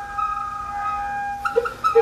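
The Honkpipe, a homemade hose-blown noise contraption, holding several steady high tones at once, with a few short wavering notes near the end.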